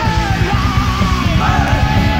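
Heavy metal song from a 1990s cassette demo compilation: distorted guitars and fast drumming, with a shouted vocal line over them.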